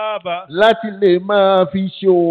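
A man chanting into a microphone, his voice held on long, melodic notes that bend between short phrases.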